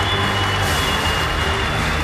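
Audience cheering and applauding over loud music, with a steady bass beneath and a thin, high held tone.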